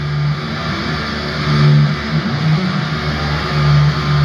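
A heavy rock band playing live through an arena PA, recorded on a phone: distorted low guitar and bass notes held and changing in a slow riff.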